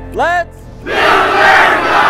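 One voice gives a short rising shout, then a large group of young people shouts together for about a second and a half before the cry fades.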